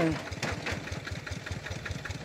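Small engine idling steadily, with a rapid even low beat.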